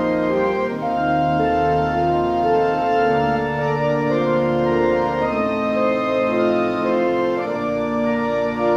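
Church organ playing slow, sustained chords, the harmony and bass moving to a new chord every two seconds or so.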